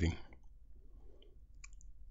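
A man's last spoken word trailing off, then a quiet pause holding a faint breath and a few small mouth clicks close to the microphone.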